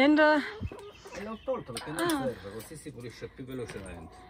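Chickens clucking, loudest in the first half-second and again in short runs later, mixed with a man's voice talking to them.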